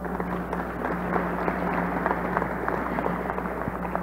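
Audience applauding: a dense, even patter of many hands clapping, with a steady hum underneath.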